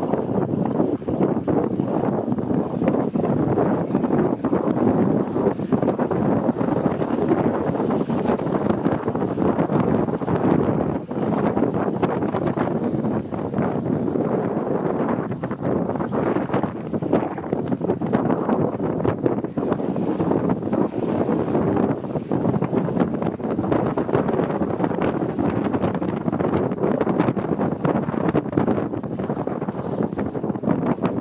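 Wind buffeting the microphone over the rush of water along the hulls of a WindRider 16 trimaran sailing through chop. The noise is steady and flickers with the gusts.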